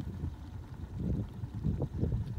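Wind buffeting the phone's microphone: an uneven low rumble that rises and falls throughout.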